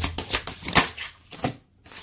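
Deck of oracle cards being shuffled by hand: a rapid run of flicking card clicks that slows and stops about a second in, followed by a couple of softer taps as a card is drawn.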